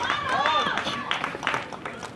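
People's voices talking and calling out, with rising-and-falling pitch in the first second, fading toward the end. A short sharp knock comes about a second and a half in.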